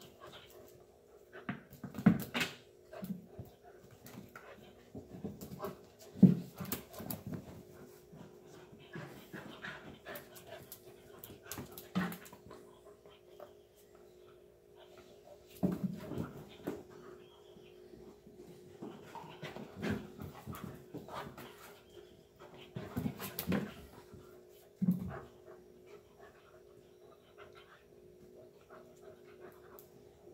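Two 3-month-old Airedale terrier puppies playing rough with each other, their dog noises coming in irregular bursts, loudest about two and six seconds in.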